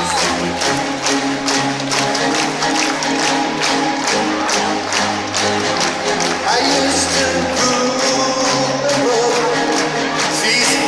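Live band music played through an arena PA system, with a steady beat under sustained chords.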